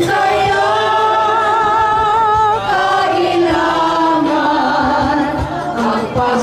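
A group of people singing a slow song together, a woman's voice among them, with long held notes that waver with vibrato.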